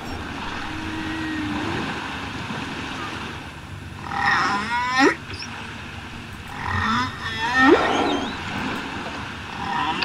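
Humpback whale calls: a low, drawn-out moan about a second in, then several rising, whooping calls with high overtones, around four seconds, between seven and eight seconds, and again near the end.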